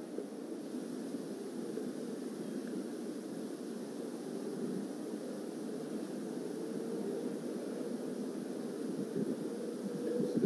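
Steady low rumble of outdoor background noise, even throughout, with no distinct events.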